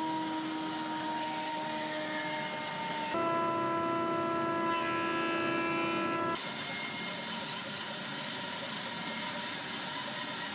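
Stationary woodworking machines cutting walnut, in segments that change abruptly about three and six seconds in. First a bandsaw runs with a steady hum and whine. Then, about six seconds in, there is an even hiss, like a jointer's cutterhead planing the board's edge.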